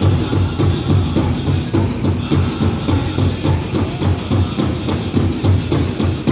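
Powwow drum beaten in a steady rhythm, about three beats a second, for a jingle dress dance, with the metal jingle cones on the dancers' dresses rattling.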